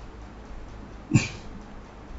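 A single short cough from a man close to the microphone, a little over a second in, over quiet room tone.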